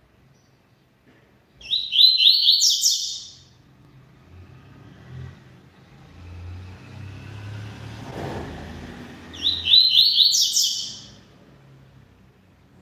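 Double-collared seedeater (coleiro) singing two short, loud phrases of rapid high notes, about eight seconds apart. Between the phrases, a vehicle passes with a low rumble that swells and fades.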